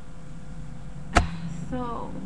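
A single sharp click about a second in, with a voice starting just before the end.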